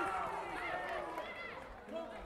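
People's voices calling and shouting across a large indoor sports hall, fading toward the end.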